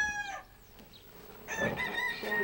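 Rooster crowing twice. The end of one long crow tails off and drops about half a second in, and after a short pause a second crow begins about a second and a half in.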